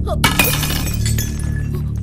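A ceramic cup and tray dropped onto a hard stone floor: one sharp crash about a quarter second in, ringing on for about a second, over steady background music.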